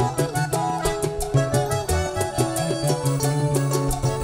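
Live band playing an instrumental vallenato passage: a melody of held notes stepping up and down over a steady bass line and regular percussion, with no singing.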